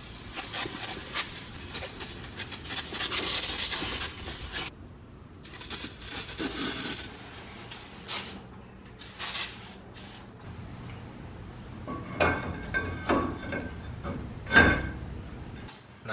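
Hands-on work at a car's rear disc brake: about four seconds of rough hissing and scrubbing noise as the parts are cleaned, then scattered clicks and metal clanks, the loudest knocks near the end.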